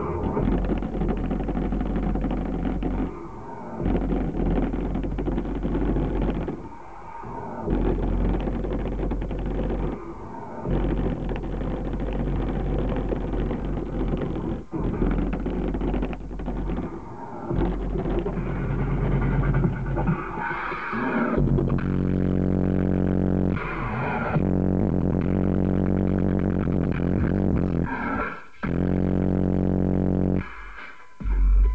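Dubstep played loud through a car audio system with JL Audio subwoofers in a sealed enclosure, heard from outside the car: heavy bass with brief breaks every few seconds, then a long buzzing synth bass note from about two-thirds of the way in.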